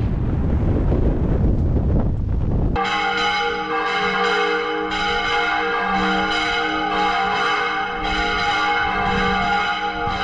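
Low wind rumble on the microphone, then church bells ringing for mass. The bells start suddenly about three seconds in, with repeated strokes over a long ringing hum.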